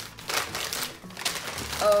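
Paper wrapping crinkling and rustling as an item is unwrapped from it by hand, a dense run of small crackles.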